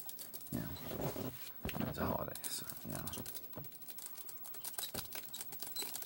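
Low, mumbled speech in a few short phrases, over many small, quick clicks and taps. The clicks come in irregular runs, like fingertips or nails handling small hard objects.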